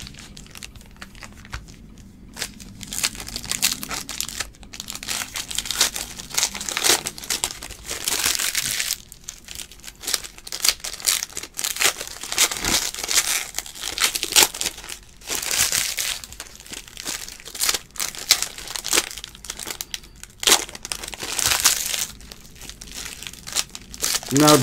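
Foil trading-card pack wrappers (2018 Panini Chronicles baseball packs) being torn open and crinkled by hand in irregular crackling bursts. The sound is quieter for the first couple of seconds.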